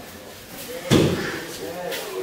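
A single heavy thud about a second in: a body landing on the mat during aikido throwing and pinning practice, echoing in a large hall, with voices in the background.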